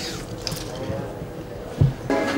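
Indistinct voices and light handling noise in a workroom, with a single dull thump near the end.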